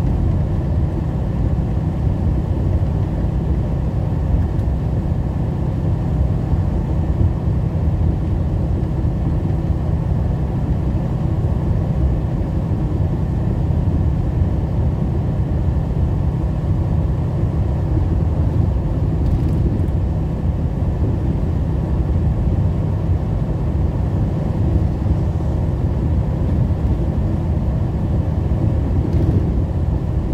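Inside a semi-truck's cab at highway cruising speed: the steady low drone of the diesel engine with tyre and road noise, unchanging throughout.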